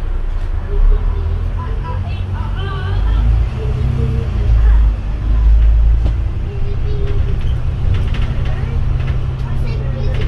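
Double-decker bus engine and body rumble heard from the upper deck as the bus pulls away from a stop; the low drone grows louder a few seconds in as it accelerates.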